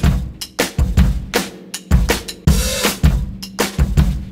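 Recorded music: a drum-kit beat of bass drum, snare and cymbals with no vocals, in a steady rhythm of about two beats a second.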